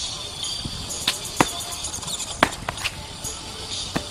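About five sharp smacks at irregular spacing, the loudest a little after one second and near two and a half seconds, made by a krump dancer's hits and stomps, over steady outdoor background noise.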